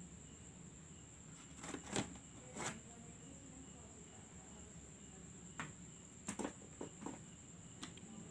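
Faint, scattered clicks and light knocks from plastic laptop parts being handled during disassembly, a few seconds apart. A steady high-pitched whine runs underneath.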